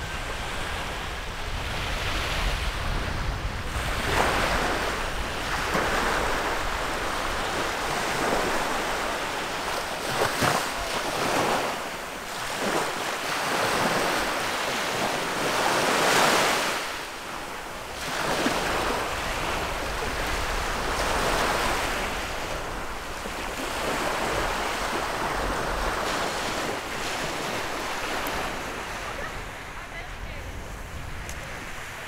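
Small waves of the Gulf surf breaking and washing up a sandy shore, the wash swelling and fading every few seconds. Wind rumbles on the microphone underneath.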